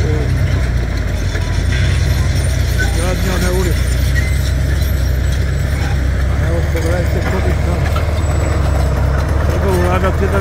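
An engine running steadily with a low, even rumble, with faint voices in the background.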